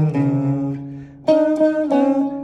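Electric guitar playing single notes of a riff on the low strings: two low notes at the start, the second left to ring and fade for about a second, then three quicker notes near the end.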